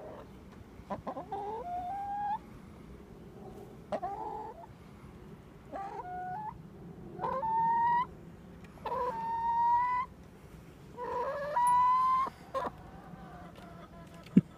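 Barred Rock hen giving a run of about six loud, insistent squawking calls, one every second or two, each a short note followed by a drawn-out, slightly rising one; the calls grow longer in the second half.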